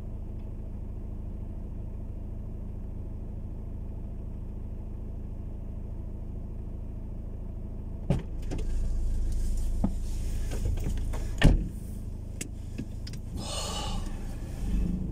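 Car engine idling, heard from inside the cabin as a steady low hum. About eight seconds in, a click, then louder rustling with a few knocks inside the car.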